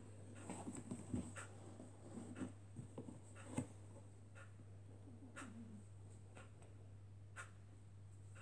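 Faint scattered rustles and soft taps of a full-head pig mask being settled and adjusted by hand, over a steady low hum.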